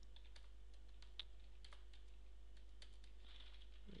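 Computer keyboard being typed on: faint, irregularly spaced key clicks, over a steady low hum.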